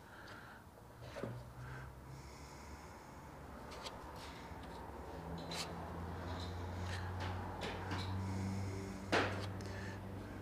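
Plastic body-filler spreader scraping and working body filler across a disposable mixing board: soft, irregular scrapes and clicks over a low steady hum, with one sharper scrape about nine seconds in.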